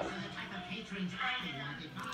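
A person laughing and speaking briefly, over a steady low hum in a small room.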